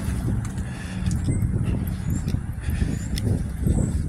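City street traffic: a low, uneven rumble of passing vehicles, with a few faint, short high chirps.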